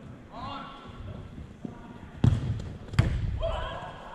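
Two loud thuds of an indoor soccer ball being struck, about three-quarters of a second apart, each leaving a short low rumble in the hall, with players shouting around them.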